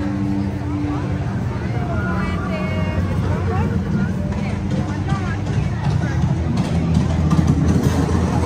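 Crowd ambience of guests walking and talking, several voices overlapping, over a steady low rumble; a held note of background music fades out in the first second.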